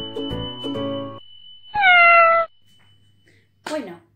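A single cat meow, a little under a second long and sliding slightly down in pitch, about two seconds in; it is the loudest sound here. Before it, music with bell-like notes plays and stops about a second in.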